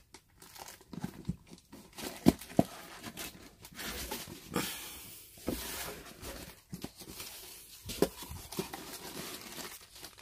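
Cardboard packaging being handled: an inner cardboard box pulled up and out of its outer box, with irregular rustling and scraping and a few sharp knocks, the loudest a little over two seconds in.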